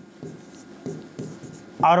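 A pen writing on a board: several short strokes as a word is written out. A man's voice starts near the end.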